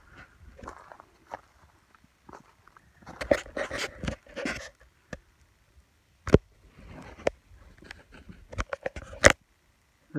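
Footsteps on a dry dirt and leaf-litter trail: irregular crunches and scuffs, with a longer patch of rustling about three seconds in and two sharper knocks, one about six seconds in and one near the end.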